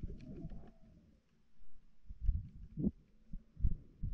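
NASA sonification of the star KIC 7671081B's brightness oscillations: a steady low hum with irregular low pulses and slow rising-then-falling tones.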